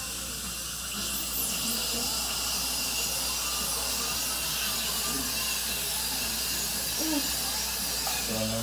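Dental equipment running during a wisdom tooth extraction: a steady high hiss of the handpiece and suction, louder from about a second in.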